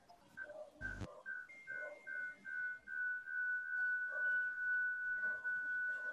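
A high, steady whistle-like tone, first broken into a quick string of short beeps, then held without a break. There is a single thump about a second in.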